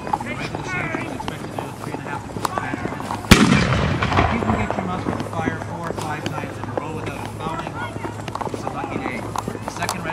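A single loud black-powder gun blast about three seconds in: a sharp crack followed by a rolling echo lasting over a second, from re-enactors firing on command. People are talking throughout.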